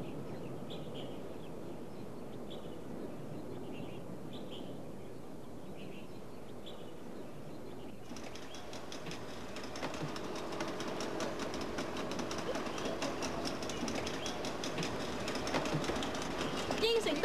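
Outdoor background noise with short, high bird chirps every second or so. About halfway through it gives way to a louder, busier waterside ambience: a steady low hum with many clicks and knocks.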